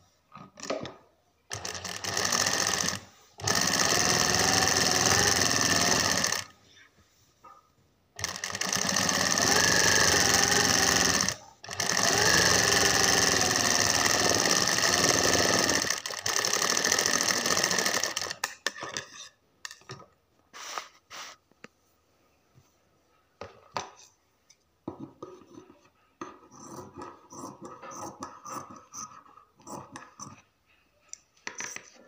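Sewing machine stitching a pajama cuff in several runs of a few seconds each, the longest about seven seconds, with short pauses between them. It stops a little past the middle, and after that come only light clicks and the handling of fabric.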